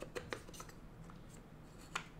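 Wooden puzzle box (Box of Tricks) being handled, its wooden sliding bars faintly clicking and rubbing: a few light clicks in the first half-second and a sharper click near the end.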